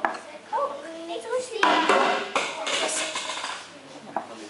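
High-pitched children's voices chattering, loudest for about a second and a half in the middle.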